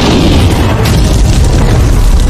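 Electric scooter battery igniting on its own: a sudden boom as it flares up, then a loud, continuous low rumble of burning.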